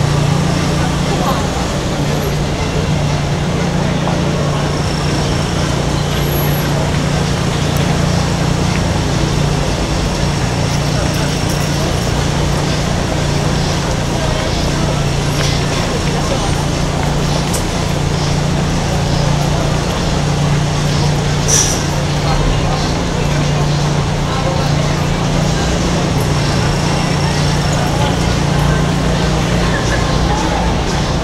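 Busy city street ambience: steady crowd chatter mixed with passing traffic, over a constant low hum.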